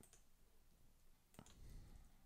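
Near silence with a few faint computer clicks as code is copied and pasted: one right at the start and a small cluster about a second and a half in.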